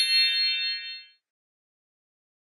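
A bright electronic chime sound effect: a single ringing ding that fades away about a second in.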